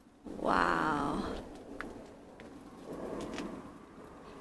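A cat meowing: one long, wavering meow about a third of a second in, then a quieter second meow near the three-second mark.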